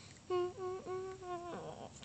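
A girl humming a short tune of about four notes, each held at a steady pitch, for a little over a second.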